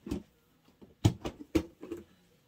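Newspaper being handled and dropped into a plastic tote: a short crinkle at the start, then four quick crinkles and soft knocks close together in the second half.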